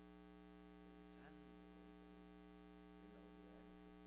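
Near silence, with a steady electrical mains hum on the broadcast audio.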